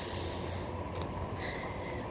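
Quiet outdoor background noise with a steady low hum, and a short breathy hiss at the start.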